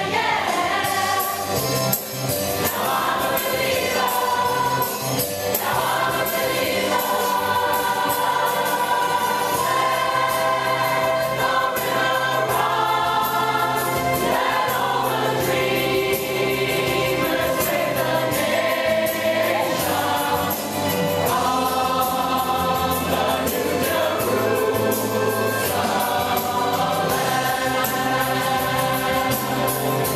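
Mixed choir of men's and women's voices singing together without a break.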